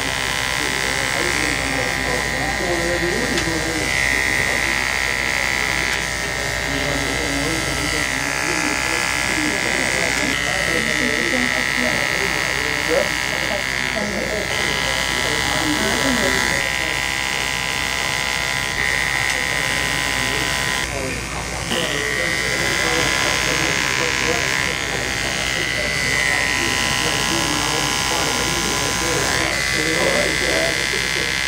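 Andis Ceramic electric hair clipper with a 000 blade running with a steady buzz as it cuts hair at the nape against a comb. The buzz swells and eases as the blade moves through the hair, with a brief dip about two-thirds of the way through.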